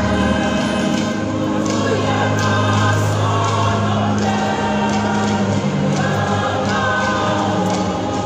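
Choir singing, in long held notes in several voice parts.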